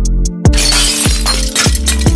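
A glass-shattering sound effect starting about half a second in and fading over about a second, laid over electronic background music with a drum-machine beat and deep, falling bass kicks.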